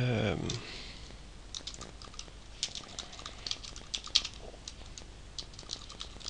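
Typing on a computer keyboard: a run of irregular keystrokes starting about a second and a half in and lasting some four seconds.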